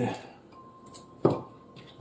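A single sharp knock on a cutting board a little over a second in, made while cut red onion is being handled with a knife on the board.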